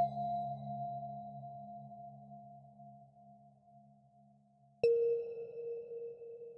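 Ambient relaxation music. A bell-like tone is struck at the start and rings slowly away over a fading low drone. A second, lower tone is struck near the end and rings on.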